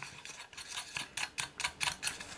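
Small metallic clicks and ticks, irregular and about five a second, as fingers turn the metal coupling ring on the sensor's round electrical connector.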